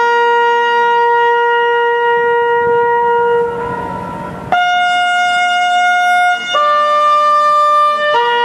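A lone bugle playing a slow call of long held notes, one at a time. The first note is held for about three and a half seconds and fades. Then comes a higher note, then a slightly lower one, and the call returns to the first note at the end.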